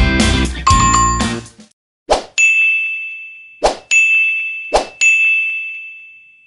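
Guitar background music ends about a second and a half in, then three click-and-ding effects from a subscribe-button animation follow: each a sharp click and, a moment later, a bright bell ding that rings out and fades.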